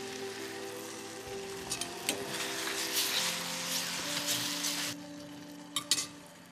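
Chopped tomatoes, onion and serrano peppers sizzling in oil in a saucepan on medium heat, the hiss swelling in the middle and easing off near the end. Soft background music with held notes plays over it, and a couple of light clicks come just before the end.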